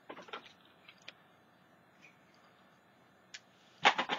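Light handling sounds on a craft desk: a short cluster of small clicks and rustles at the start, then a couple of single faint clicks in an otherwise quiet room.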